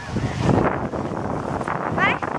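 Wind buffeting the microphone, a rough low rumble that peaks about half a second in.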